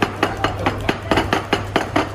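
Chopsticks clacking against a ceramic bowl in a quick, even rhythm, about five strikes a second, as noodles are tossed and mixed in it. A low steady hum runs underneath.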